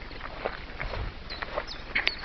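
Footsteps on a dirt track through tall grass, with grass brushing and rustling in irregular swishes.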